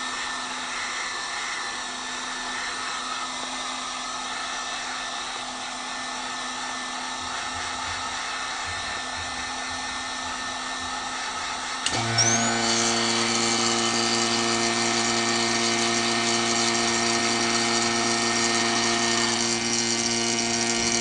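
Heat gun blowing steadily. About twelve seconds in, a click and the vacuum pump switches on with a louder, steady motor hum that pulls the softened acrylic down over the part.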